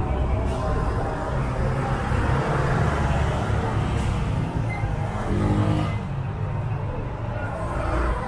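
City street ambience: road traffic running steadily alongside, with the voices of passers-by.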